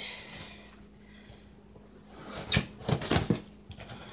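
A package being handled: a few sharp knocks, clicks and rustles of the box and packaging about two and a half to three and a half seconds in, over a faint steady low hum.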